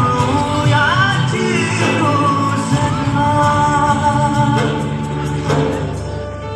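A Hindi song with a singer's voice over instrumental backing, heard in a large hall. It gets quieter near the end.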